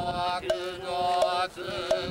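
Buddhist priests chanting a sutra, with long held notes and slow changes of pitch, punctuated by short sharp knocks at intervals.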